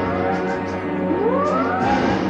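Warship's warning siren wailing in rising sweeps over background music, a second wail climbing from about halfway through. It is the destroyer warning that the boats are in the danger zone of its firing.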